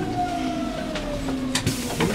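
Berlin S-Bahn electric train heard from inside the carriage, its motors whining in one slowly falling pitch over a steady rumble as the train slows to a stop at a station.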